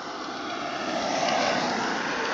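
A passing motor vehicle. Its noise swells steadily to its loudest about one and a half seconds in.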